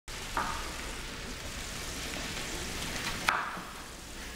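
Steady sizzling hiss of food frying in a kitchen pan, with two light knocks, one near the start and one near the end.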